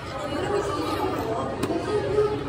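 Chatter of several voices, with a single sharp click about one and a half seconds in.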